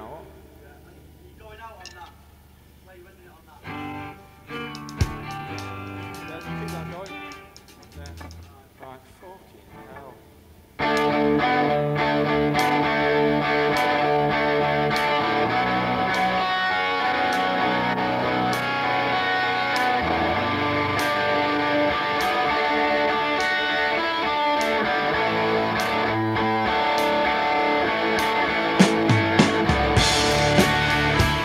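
A rock band playing in a studio: sparse, quieter electric guitar for about the first ten seconds, then the full band comes in suddenly and loudly with electric guitars and regular cymbal hits.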